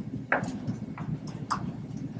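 Three soft footsteps in heeled ankle boots on a carpeted floor, each a short knock.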